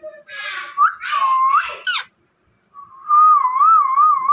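Pet rose-ringed parakeet chattering in squawky, speech-like calls for about two seconds, then, after a brief pause, a long warbling whistle that wavers up and down in pitch.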